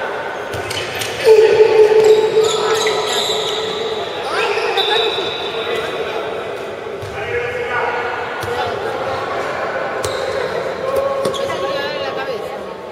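A handball bouncing and hitting the court in a large, echoing sports hall, amid shouting voices. The loudest moment is a burst of shouting about a second in.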